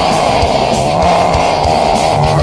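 Heavy metal cover of a punk rock song: distorted electric guitars and drums playing loud and steady, with one long note held over them as the melody.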